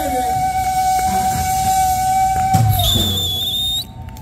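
Live rock band amplified through large PA speakers, ending a song: one long held note rings over drums and bass, then the band stops. A high, steady whistle sounds for about a second near the end.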